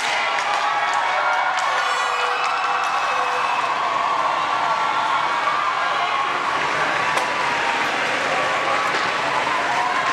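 A large crowd's many voices at once, chattering and cheering in a steady, unbroken din.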